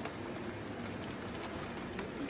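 Pet rats shuffling over wood-pellet bedding and nibbling at a pancake: a faint, steady rustle with scattered small ticks.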